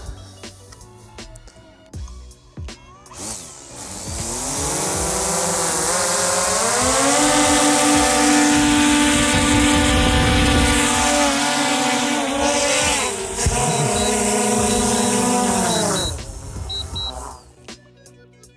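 DJI Mavic 2 Pro quadcopter's motors and propellers spooling up in a rising whine about three seconds in, then holding a steady loud whine at high power while lifting a water jug of about 1.15 kg on a rope. Near the end the pitch falls and the motors wind down, with a few short high beeps.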